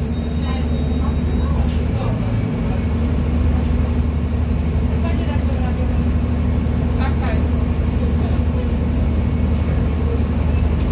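Mercedes-Benz O-500U city bus's Bluetec 5 diesel engine running with a steady low drone.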